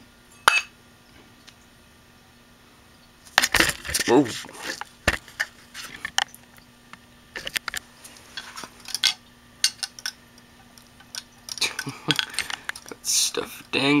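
Metal parts of a dismantled hard drive being handled, giving scattered clinks and knocks: one early, then a cluster about three and a half seconds in and more through the second half.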